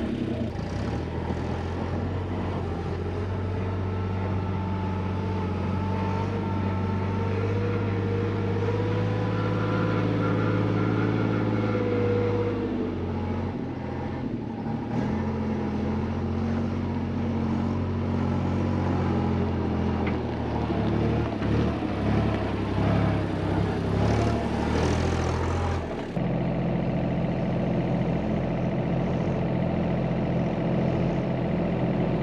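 Site dumper's diesel engine running as it is driven, steady for long stretches with its pitch shifting as the throttle changes; the sound changes abruptly near the end.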